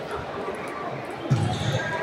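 Table tennis hall ambience: plastic balls ticking on tables and bats from several games, under indistinct voices echoing in the large room, with one short louder sound about one and a half seconds in.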